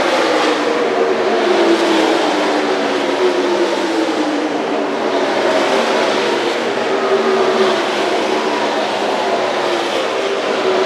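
NASCAR Cup Series stock cars' V8 engines running at full throttle as a string of cars passes one after another. Each car's engine note drops in pitch as it goes by, and the overlapping engine notes keep the noise continuous.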